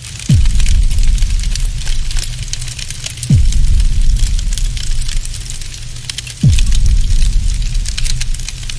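Cinematic outro sound effects: three deep booms, each falling in pitch, about three seconds apart. Each boom leaves a low rumble that fades slowly, under a steady crackle like burning embers.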